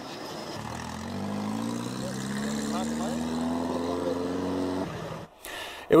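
Small truck's engine pulling away, its note rising steadily over about four seconds, then cut off short.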